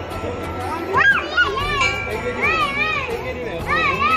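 Crowd of worshippers at a busy temple, with high-pitched, sing-song voices calling out from about a second in. The ring of a struck temple bell dies away at the start.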